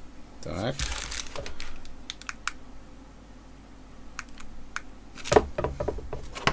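Light plastic clicks and taps from a USB cable being handled at a power bank and the selfie ring light's inline button control, with a cluster of clicks near the end as the buttons are pressed to switch the light on. A short rising hum from a voice comes about half a second in.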